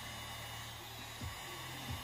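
Electric heat gun running, a steady blowing hum, as hot air is played over EVA foam to seal and close up its pores.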